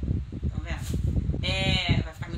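A woman talking, with a brief high-pitched, slightly wavering drawn-out vocal note lasting about half a second near the end.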